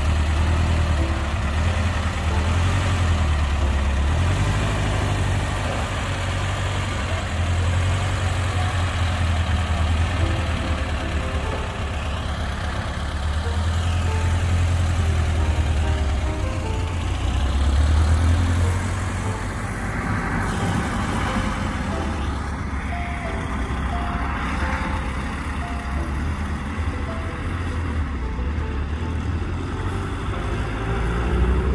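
1978 Volkswagen Super Beetle convertible's air-cooled flat-four engine running as the car pulls away and drives off, swelling about eighteen seconds in. Background music plays beneath.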